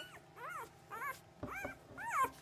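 Newborn Labrador Retriever puppies squeaking while being picked up and handled: about four or five short, high squeaks, each rising and falling in pitch, roughly half a second apart.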